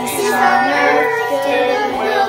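Children singing a Christmas song together, in held, sung notes.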